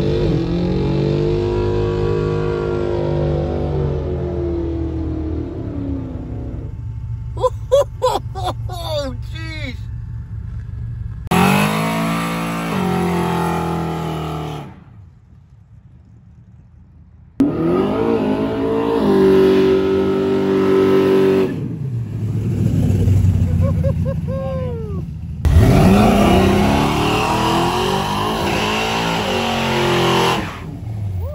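A string of burnouts cut one after another: car engines revving hard and holding high while the rear tyres spin on the pavement. First a green Dodge Challenger towing a small trailer, later a rusty old Ford pickup. Each clip cuts off abruptly, with a short, quieter stretch about halfway through.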